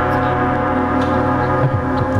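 Chamber orchestra holding a dense sustained chord of many steady tones, with a short sliding low note near the end.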